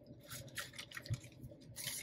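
Faint rustling and soft taps of cardstock planner dashboards being handled and slid against each other on a desk, with a soft thump about a second in.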